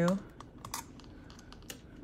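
A few light, irregular clicks and ticks of a small flathead screwdriver undoing the screws of a planner's metal ring mechanism.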